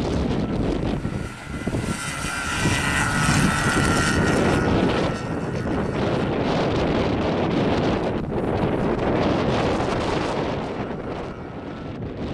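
Skoda Fabia's engine running hard as the car is driven quickly through a cone slalom, with wind on the microphone. A high whine rises over it for a few seconds early in the run.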